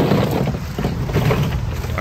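Outdoor background noise with wind rumbling on the microphone.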